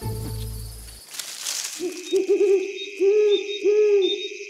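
An owl hooting in short, repeated hoots from about two seconds in, over a steady high chirring of night insects. A brief whoosh comes just before the hoots.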